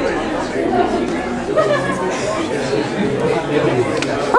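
A steady babble of overlapping, indistinct voices with no clear words.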